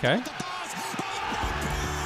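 Football fans singing together in a crowd, followed about one and a half seconds in by music with a steady low bass coming in.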